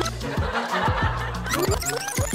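Laughter over upbeat background music with a steady bass line.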